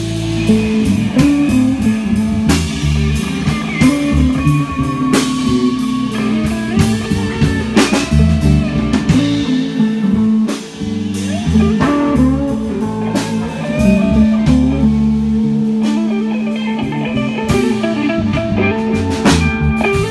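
Live band playing an instrumental passage with no singing: electric guitar, bass guitar and drum kit.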